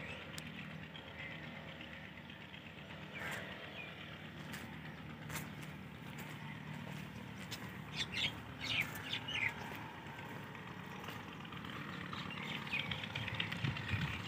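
Quiet open-air ambience with a faint steady low hum, and a few short bird chirps about eight to nine and a half seconds in.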